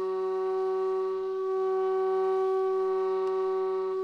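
Background music: one long, steady held note, flute-like, over a lower sustained drone.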